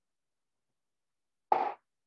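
Silence broken about one and a half seconds in by a single short, sharp sound lasting about a quarter of a second.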